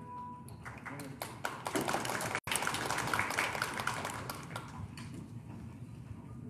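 The last held note of the music dies away in the first half-second. Then come scattered taps, clicks and shuffling, heaviest in the middle, with low murmuring voices, as choir members move off the platform.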